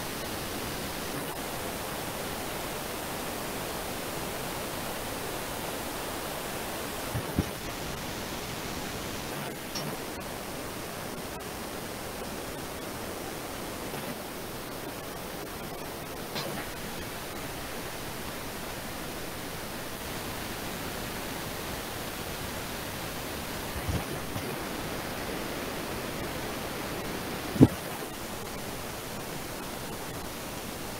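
Steady hiss of an open microphone with no speech, broken by a few brief knocks; the sharpest comes near the end.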